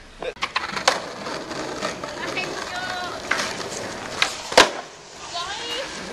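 Skateboard wheels rolling on asphalt, broken by several sharp clacks of the board on the road. The loudest clack comes a little past halfway.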